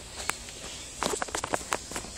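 Footsteps on a hard, polished store floor: one step, then a quick run of about six steps about a second in.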